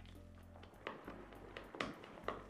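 Faint background music with a few light, irregular taps of a mixing utensil against a glass bowl as batter is stirred.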